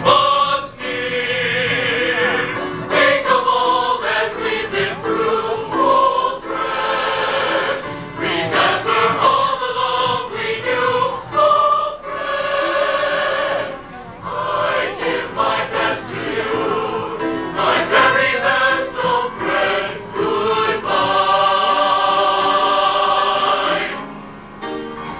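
Mixed high school choir singing in parts, ending on a long held chord near the end.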